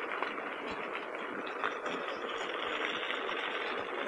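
Electric unicycle's tyre rolling on a dirt and gravel track, a steady even rolling noise with a few faint ticks.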